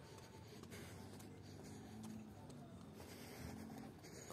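Faint scuffing and rubbing close to the microphone, the footsteps and handling of someone walking on a paved sidewalk, over quiet street ambience.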